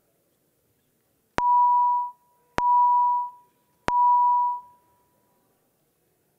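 Three electronic tones of one pitch, a little over a second apart, each starting sharply and fading over about half a second. They are the legislative chamber's signal that a roll-call vote has opened on the electronic voting system.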